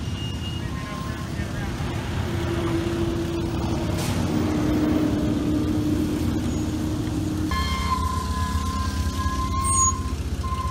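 Propane-fuelled Hyster forklift's engine running while it carries a heavy CNC machine. A steady whine rises over the engine from about two seconds in until about seven seconds. A steady high alarm tone comes on near the end.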